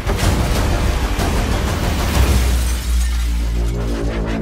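Trailer score under crashing, breaking-debris sound effects: a sharp impact near the start, then a dense noisy wash and a deep low rumble, with pitched musical bass notes coming in near the end.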